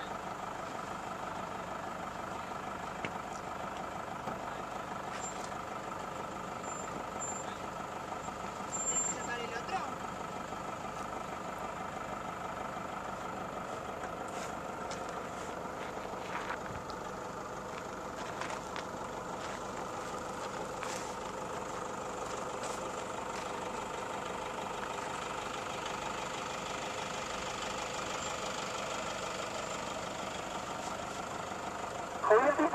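Off-road vehicle engine running steadily at idle.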